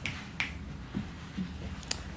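Three sharp clicks, the last one, near the end, the loudest, over a low, steady background noise.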